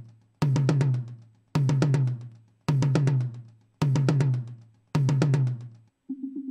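A recorded tom drum hit, looped: five identical strikes about a second apart, each a sharp attack with a low-pitched ring that dies away within a second. The tom is heard through an equalizer cutting about 2.7 dB around 255–265 Hz to thin out its mid-heavy, boxy body.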